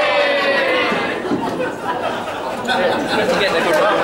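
Indistinct chatter of several voices echoing in a large hall.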